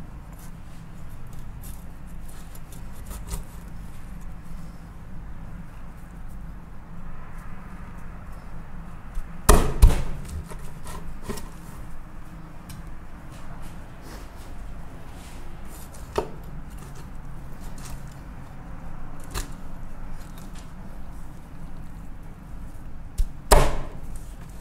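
Knife and iguana carcass handled on a wooden cutting board: two loud sharp knocks on the wood, about ten seconds in and again near the end, with a few lighter clicks between, over a steady low background hum.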